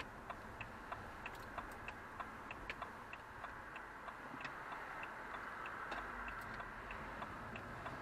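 Car's turn-signal indicator ticking steadily, about three clicks a second, over the low hum of engine and tyre noise inside the cabin.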